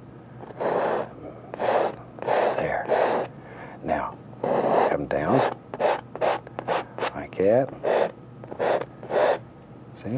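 Painting knife scraping through wet oil paint on a canvas: a quick series of short scrapes, over a dozen, removing paint to lay out a building's basic shape.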